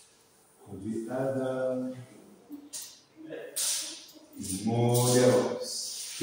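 A man's voice in two short stretches of talk with a pause between, the words not made out.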